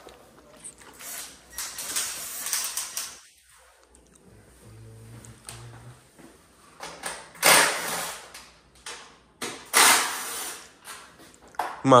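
Handling noises from working on a dirt bike's plastic body panels while fitting decals: short bursts of rubbing and peeling noise. The two loudest come about seven and a half and ten seconds in.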